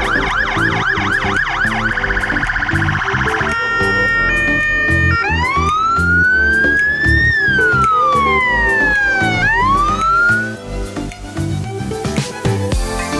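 Electronic fire-engine siren cycling through its tones: a fast repeating yelp, then a rapid warble, then a steady two-tone hi-lo, then a slow wail that rises, falls and rises again before cutting off near the end. Background music with a steady beat plays underneath.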